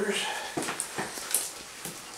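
Three-week-old puppies whimpering and squeaking faintly, with a few soft clicks and scuffles as they move about.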